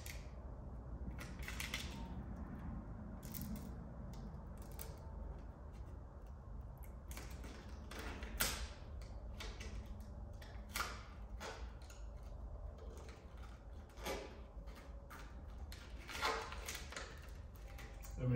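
Transfer paper being slowly peeled back from an adhesive vinyl overlay, giving scattered crackles and ticks several seconds apart over a low steady hum.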